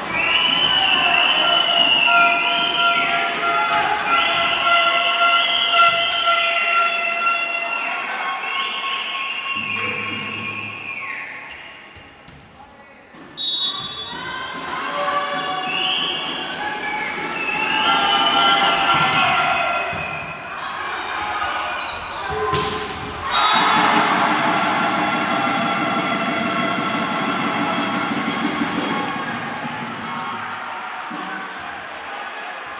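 Volleyball rally in a sports hall: the ball being struck and hitting the floor, under crowd voices shouting and chanting. Steady crowd cheering takes over for about the last six seconds.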